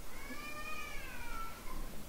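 A faint, single drawn-out animal cry that rises slightly in pitch and then falls, lasting about a second and a half.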